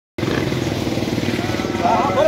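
Bus diesel engine idling close by, a steady fast low pulsing, with crowd voices coming in near the end.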